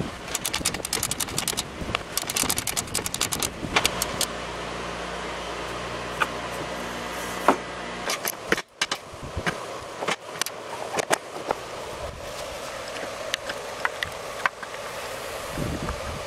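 Plastic belt guard cover on a lawn tractor mower deck being worked loose and lifted off: a quick run of sharp clicks and rattles in the first few seconds, then scattered lighter clicks and knocks. A steady low hum runs for a few seconds in the middle.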